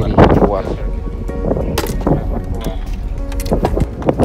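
Indistinct voices with music in the background, and a single sharp click or knock a little under two seconds in.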